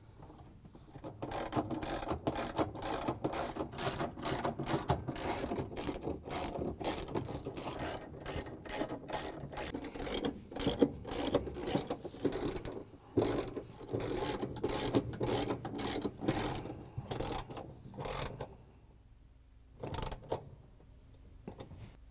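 Hand ratchet with an extension and 3/8-inch socket clicking repeatedly, about three clicks a second, as it drives the mounting bolts of a GE washer transmission assembly into the tub. The clicking stops about 18 seconds in, with one more click shortly before the end.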